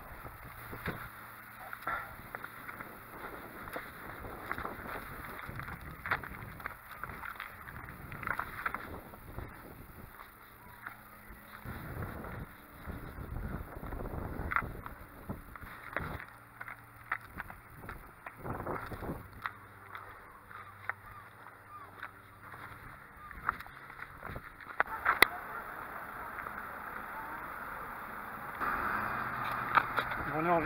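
Irregular rubbing and knocking from a camera strapped to a running pack, with wind on the microphone, as the runner moves along.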